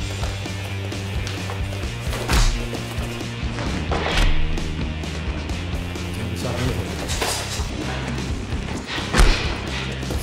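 Background music, broken by a few sharp thuds of gloved punches and kicks landing in kickboxing sparring, about two, four and nine seconds in, the last the loudest.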